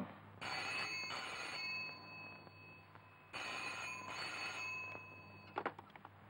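Desk telephone ringing: two double rings of a steady, high bell tone. A couple of sharp clicks near the end as the handset is picked up.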